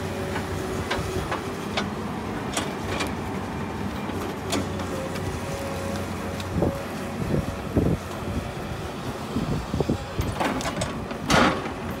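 Diesel engine of a Komatsu PC200 excavator fitted with a log grapple, running with a steady drone and a held tone. Over it come intermittent knocks and clanks, coming in clusters in the second half, with the loudest clank near the end.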